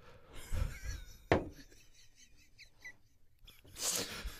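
Quiet lull in a small room: faint low voice sounds, a single sharp click about a second in, and a short breathy sound just before the end.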